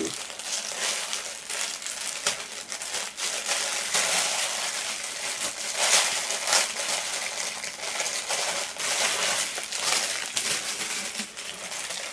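Clear plastic bag crinkling and rustling as it is handled and opened, with acrylic and resin necklace beads clicking against each other again and again.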